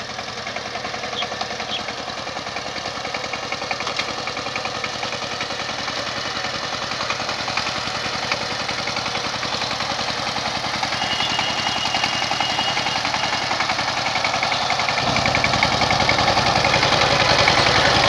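Two-wheel power tiller's single-cylinder diesel engine running steadily under load as it puddles a flooded rice paddy. It grows louder as it draws closer, and a deeper rumble comes in near the end.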